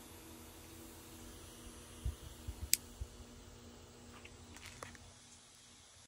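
Small brushed DC hobby motor spinning a plastic propeller, running off batteries as they drain: a faint steady hum. A few light clicks, the sharpest about halfway through.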